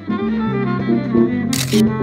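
Live instrumental music from a small band with saxophone, keyboard and drums, the notes held and overlapping. A short sharp click cuts in near the end.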